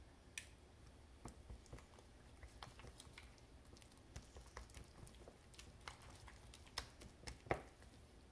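Faint, irregular scrapes and clicks of a silicone spatula stirring and pressing thick batter in a small stainless-steel bowl.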